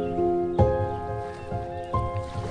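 Solo piano playing a slow, gentle piece: sustained chords ring and fade, a new chord with a low bass note is struck about half a second in, and a single high note sounds near the end.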